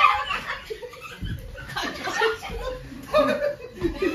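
A group of young people laughing hard together, with excited voices mixed in. The laughter is loudest at the start and carries on in bursts.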